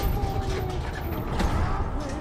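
Film soundtrack of a low rumble with creaking, gliding metallic tones and a sharp knock about one and a half seconds in, mixed with music.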